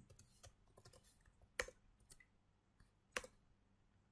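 Faint, sparse computer-keyboard keystrokes, with two louder key presses about a second and a half apart.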